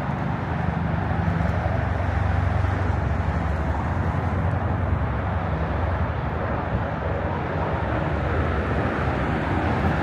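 Steady low rumble of city traffic, with no sudden sounds.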